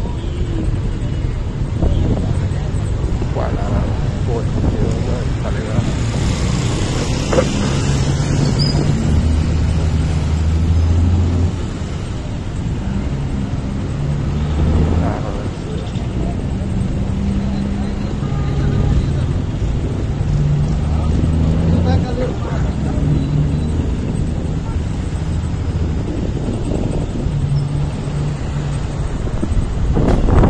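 Motorcycle engine running at low speed amid street traffic, its low note shifting up and down as the bike moves.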